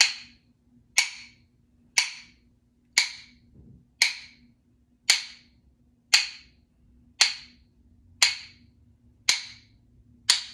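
A pair of rhythm sticks struck together to keep a steady beat, about one sharp click a second, ten strikes in all.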